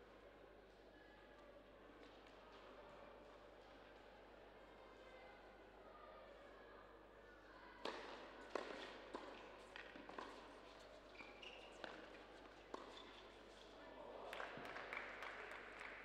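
Tennis point on an indoor court: a serve struck about eight seconds in, then a rally of racket hits and ball bounces about every half second for some five seconds. A short swell of applause follows near the end, with only faint crowd murmur before the serve.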